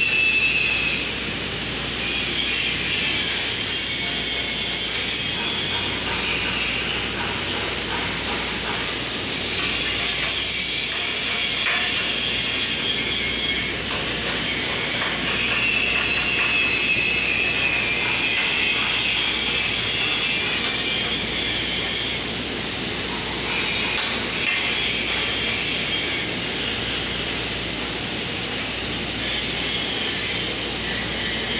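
Steady steel-shop work noise: a handheld grinder rasping and whining on steel, going on with small rises and falls.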